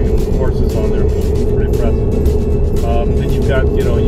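Steady road and engine rumble inside a moving car's cabin under background music, with brief fragments of a man's voice near the end.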